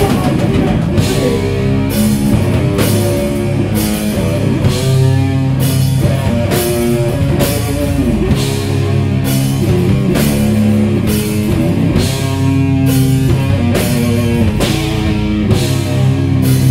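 A doom metal band playing live and loud: heavily distorted guitar and bass holding slow, low riffs over a drum kit, with cymbal hits about once a second.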